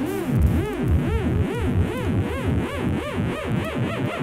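Hardstyle track in a breakdown without the kick drum: a synth repeats short rising-and-falling swoops, a little over two a second.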